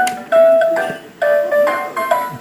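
Winnie the Pooh toy oven playing its electronic tune, a simple melody of short, clear notes, while it runs its pretend baking cycle.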